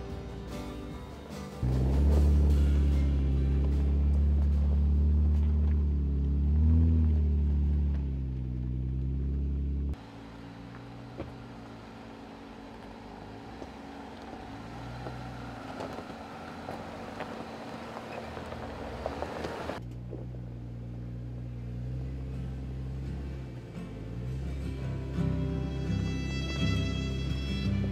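Jeep Wrangler engines crawling over a rocky dirt trail, mixed with background music. The sound changes abruptly about 2, 10 and 20 seconds in, loudest and steadiest in the first stretch with a short rise in pitch partway through.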